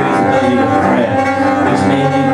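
Solo cello, bowed, playing a slow line of held notes.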